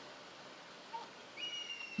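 Near quiet, then past halfway a faint, thin, high whistled tone begins with a short upward slide and holds steady.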